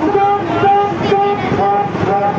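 A reedy pitched melody of short held notes, rising and falling in steps and repeating, over crowd noise.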